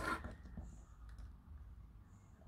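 Faint clicks and handling noise as 1/6-scale action figures are turned around by hand.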